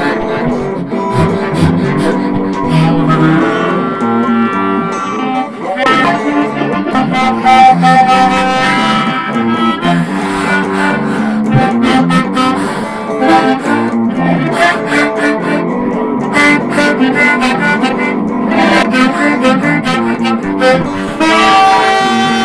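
Funky blues band playing an instrumental break, with a harmonica leading over guitar, bass and drums keeping a steady beat.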